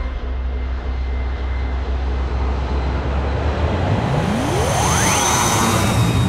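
Four-engine jet cargo plane flying past: a deep, steady engine rumble, then a whine that rises steeply in pitch over about a second and holds high near the end.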